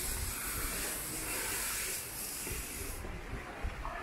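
A steady high hiss that cuts off about three seconds in, over a low rumble.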